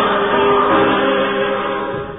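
A choir singing sustained chords in slow held notes, the phrase dying away near the end.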